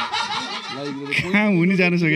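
Men laughing and chuckling, breathy laughter in the first second, then a man's voice carrying on in laughing, pitched speech.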